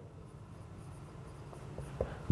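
Marker pen writing on a whiteboard: faint squeaks and rubbing of the felt tip as a word is written out.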